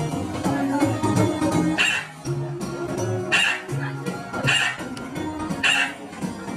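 Background music with a stepping bass line of held notes, broken by four short, bright yelp-like accents from about two seconds in, roughly one a second.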